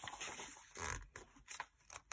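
Faint rustle of a paperback book's paper page being turned by hand, with a brief swish about a second in.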